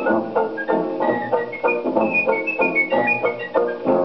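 Light dance-band music played from a 78 rpm Columbia shellac record on a gramophone: plucked chords strike several times a second, and from about a second in a high, thin, whistle-like melody steps up and down above them. The sound is narrow and lacks top end, as is typical of an old record.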